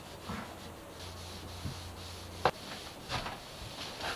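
Cloth rubbing wipe-on polyurethane onto a wooden bulkhead by hand: quiet, intermittent wiping strokes, with one sharp click about two and a half seconds in.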